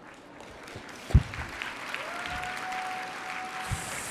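Audience applauding, the clapping building up over the first couple of seconds. A sharp thump comes about a second in, and a steady high tone is held for almost two seconds in the middle.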